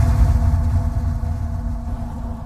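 Tail of a cinematic logo-intro sound effect: a deep rumble under a few held low tones, slowly fading.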